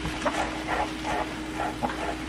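Chef's knife chopping fresh cilantro on a wooden cutting board, a run of short soft strokes about three to four a second, over a steady low hum.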